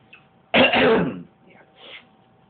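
A person clearing his throat once, a short rough burst, then a couple of faint mouth sounds near the end, just before beatboxing starts.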